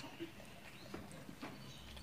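Faint close-up eating sounds: a child chewing and working food with his fingers on a steel plate, giving three soft, short clicks and smacks.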